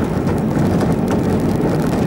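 Steady rumble of a vehicle driving on an unsealed dirt road, heard from inside the cabin: tyres crunching over the loose surface along with the engine and body noise.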